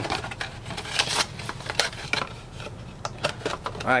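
Cardboard trading-card blaster box being opened and its packs handled: a run of irregular crackles, rustles and small tearing sounds.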